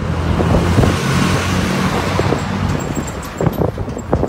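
Highway traffic: a vehicle passes close by, its tyre and engine noise swelling and fading, over a low engine hum that dies away about halfway through.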